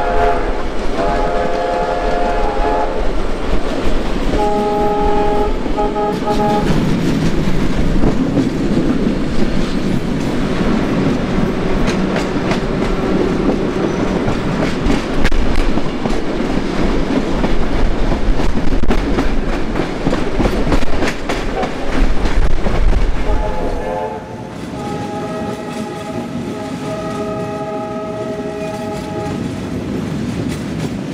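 Train whistles sounding chords in long blasts, two near the start and a longer one near the end, over the continuous rumble and clickety-clack of trains running side by side.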